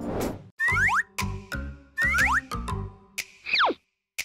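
Light, playful background music with a repeating beat and quick sliding notes, ending in one long falling whistle-like note near the end. A short swish is heard at the very start, as the scene changes.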